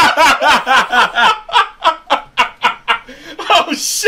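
Two men laughing: a quick run of short bursts, about four a second, that fades out after about three seconds, then picks up again near the end.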